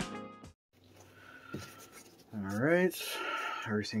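Background music ending, a second or two of near quiet, then a short voiced sound rising in pitch, followed by soft rustling as a glued EVA foam blaster body is picked up and handled.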